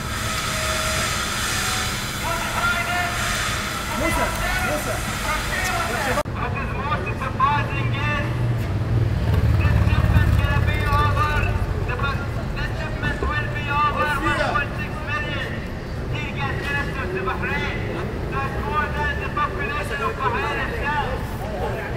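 Several men talking over one another in indistinct conversation, over a low rumble that swells around the middle. The sound changes abruptly about six seconds in.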